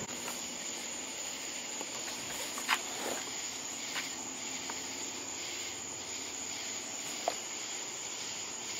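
Crickets trilling in one steady high note, with a few faint clicks.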